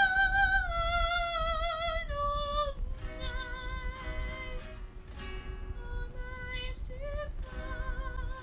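A woman singing with vibrato over a strummed acoustic guitar played by a learner. A long held note steps down over the first few seconds, then shorter sung notes come between guitar strums, and a new long note is held near the end.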